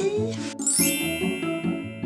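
A bright, sparkling magic-chime sound effect: about half a second in, a quick upward run of high bell-like tones rings out and slowly fades. Steady background music plays underneath.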